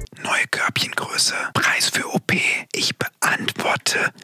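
A man whispering close into a microphone, ASMR-style, in short phrases with brief pauses between them.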